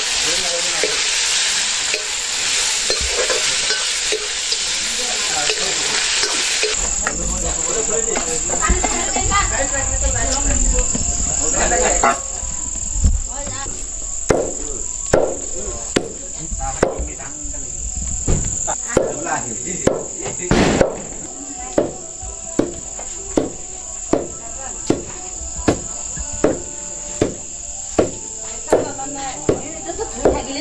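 Meat sizzling as it is stirred with a ladle in a wok over a wood fire. After about seven seconds the sound changes, and later a long wooden pestle pounds grain in a wooden mortar with regular thuds about once a second, while crickets chirp steadily behind.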